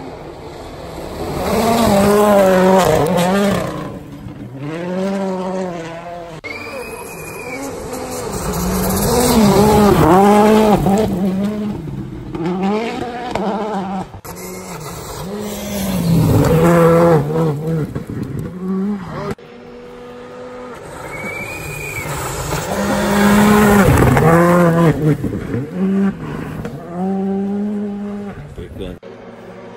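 Rally cars passing one after another on a gravel road, about four passes. Each engine note rises to a loud peak as the car comes by and then fades, and the revs climb and drop sharply with gear changes and lifts for the corner.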